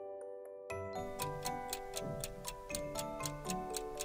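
Quiz countdown sound effect: a clock ticking rapidly and evenly, starting under a second in, over light, cheerful background music.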